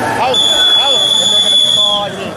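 A referee's whistle blown in one long, steady, shrill blast of about a second and a half, stopping the action on a throw, over shouts from the crowd.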